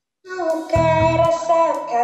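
A young female voice singing an Indonesian worship song, holding long notes over electric bass and band accompaniment. The sound comes in after a brief gap at the start.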